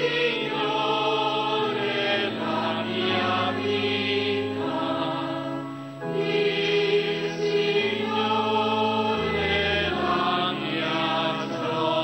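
Slow sacred choral music: sustained chords that change every second or so, in two phrases with a short break about six seconds in.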